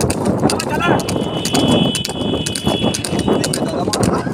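Water buffalo's hooves striking the asphalt at a fast trot, a quick even clip-clop, as it pulls a cart. A short call is heard about a second in, and a thin steady high tone sounds for a couple of seconds after it.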